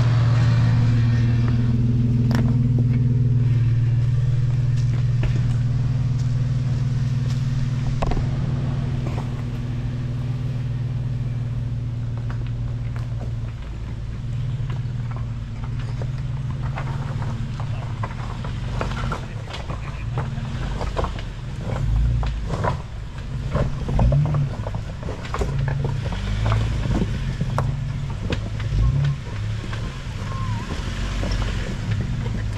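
Jeep Wrangler engine running slowly at crawling speed, a steady low hum. After about thirteen seconds the sound turns uneven, with knocks and thumps as the tires climb over rocks, the heaviest near the end.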